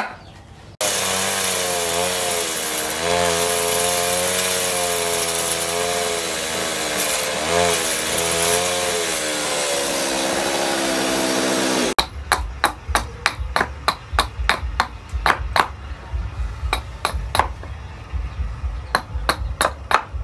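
A chainsaw runs and cuts into a wooden block for about eleven seconds, its engine note dipping and rising as the chain bites, then cuts off suddenly. It is followed by rapid, irregular sharp strikes of a hatchet chopping wood on a chopping block.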